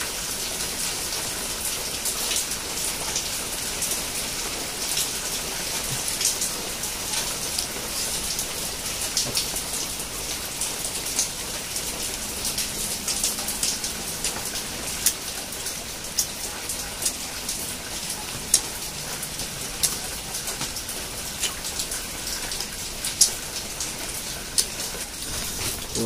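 Steady rainfall, with many sharp single drops ticking close by, a few of them much louder than the rest.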